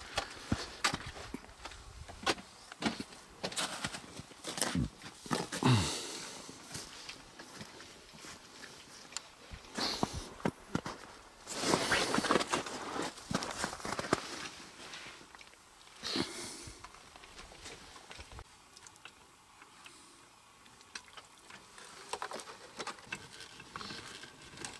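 Footsteps and rustling in dry grass and brush, with scattered small clicks and knocks, in irregular bursts.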